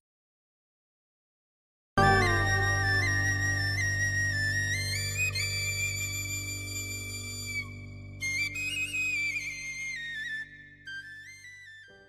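Complete silence for about two seconds, then instrumental music: a stepping melody over held low notes, gradually fading out.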